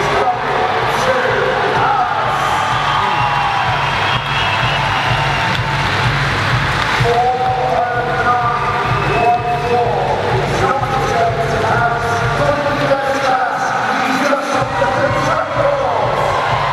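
Background music with a steady beat, mixed with a crowd cheering and shouting in a swimming arena.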